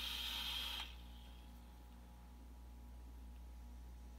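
Hiss of a vape being drawn on: air rushing through a freshly dripped atomizer as its coil fires, cutting off about a second in. A faint steady low hum follows.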